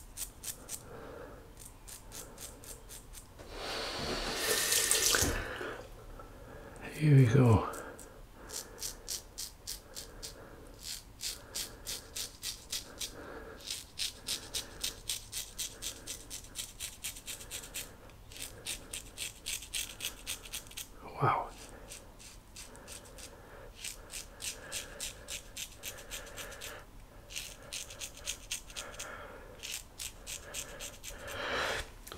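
A 1940s GEM Flip Top G-Bar single-edge safety razor with a new blade scraping through lathered stubble in short, quick strokes, many in rapid succession. About four seconds in there is a brief rush of running water, and about seven seconds in a short vocal sound falls in pitch.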